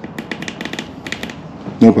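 An electrical switch clicked on and off rapidly, a quick run of about a dozen sharp clicks, with nothing powering up: the circuit has no power.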